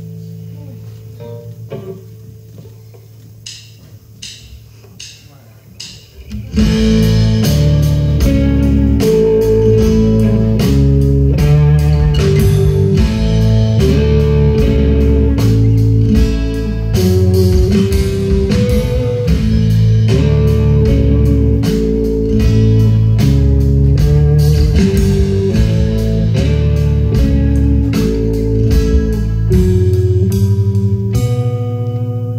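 Acoustic and electric guitar playing live: a few quiet picked notes ring over a held low note, then about six and a half seconds in the song starts in full and loud, with steady rhythmic guitar playing over a moving line of low notes.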